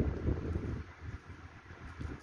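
Wind rumbling on the microphone, stronger in the first second and then easing off.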